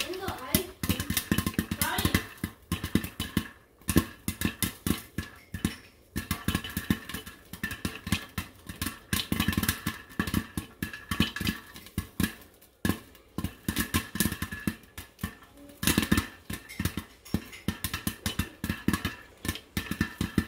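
Popcorn kernels popping in a covered stainless-steel pan on the stove: a fast, continuous run of sharp pops, many a second, that thins briefly a few times.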